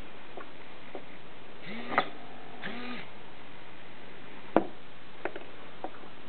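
Small servo motor in an acrylic jack-in-the-box buzzing in two short bursts, about two and three seconds in, as it turns its cam, with a click at the first. Sharp acrylic clicks and taps follow, the loudest a little past the middle, over a steady hiss.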